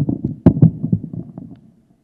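Handling noise on a hand-held microphone: a burst of low rumbling bumps and rustle with a sharp knock about half a second in, dying away before the end.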